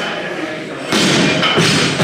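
A thud about a second in, with loud shouting voices in a large hall as a lifter sets up at a loaded barbell.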